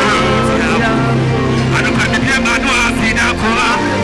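Live gospel worship music: a man's voice sings over sustained backing chords, with the singing strongest in the second half.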